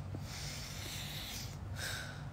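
A person breathing close to a phone microphone: one long breath of about a second, then a shorter one near the end, over a steady low hum.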